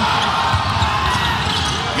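Basketball bouncing on a hardwood court as players scramble for a loose ball.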